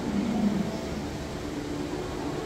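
Steady hum and hiss of air handling filling a large indoor hall, with no distinct events.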